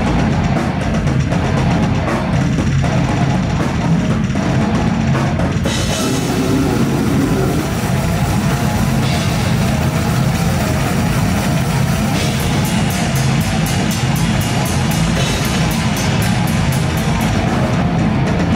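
Loud heavy metal music with a drum kit pounding throughout; about twelve seconds in, a fast, even run of drum strikes comes to the fore.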